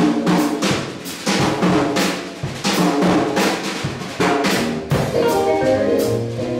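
Jazz drum kit taking a short solo break, with snare, bass drum and cymbal strokes while the bass and chords drop out. About five seconds in, the band comes back in with bass and guitar.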